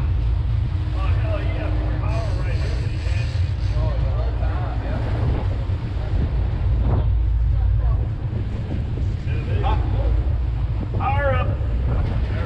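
A large sportfishing boat running at sea: a steady low engine rumble mixed with wind buffeting the microphone, with people talking indistinctly over it.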